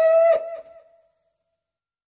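A single voice holding a high, steady note that ends the song, stopping about a third of a second in, with a short echo trailing off within the first second; the rest is silence.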